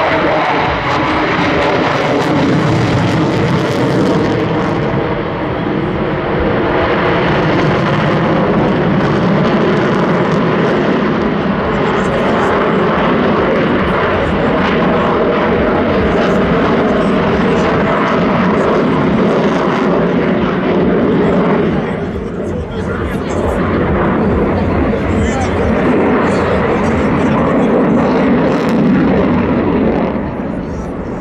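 A Sukhoi Su-57 fighter flying a display overhead, its twin AL-41F1 afterburning turbofan engines making loud, continuous jet noise with steady tones through it. The noise eases briefly about two-thirds of the way through.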